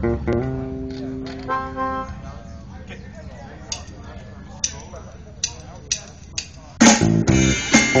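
Live electric blues-rock band: a few held bass and guitar notes, then a quiet stretch with scattered sharp clicks. About seven seconds in, the full band starts the song loudly with electric guitars, bass guitar and drum kit.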